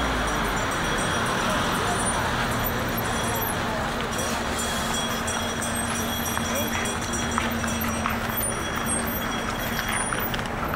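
Busy city street: car traffic and the chatter of people around, at a steady level.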